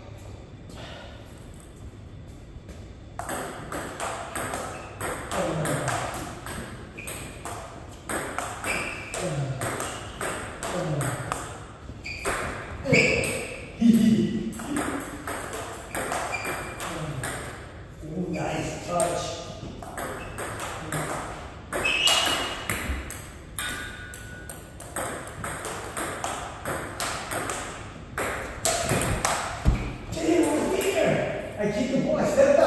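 Table tennis ball clicking back and forth off paddles and table in a rally, starting about three seconds in.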